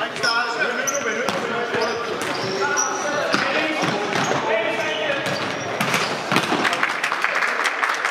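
Futsal in a sports hall: the ball being kicked and bouncing on the wooden floor, with players shouting. There are several sharp kicks, the loudest a cluster about six seconds in, and all of it rings in the hall's reverberation.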